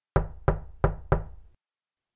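Knocking on a door: four knocks in quick succession, about three a second, each ringing briefly before the next.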